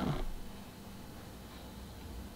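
The last syllable of a woman's speech, then quiet room tone with a faint, steady low hum.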